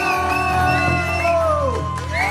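Live acoustic rock band playing: two acoustic guitars and an electric bass over a steady bass line, with long held notes that slide in pitch.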